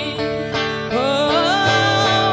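A woman singing a slow pop ballad over a backing track with guitar. About a second in, her voice slides up into a long held note with a slight vibrato.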